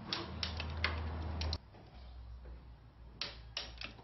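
Ratchet wrench clicking in short runs as the timing-belt tensioner bolts are tightened, with a low hum under the first second and a half.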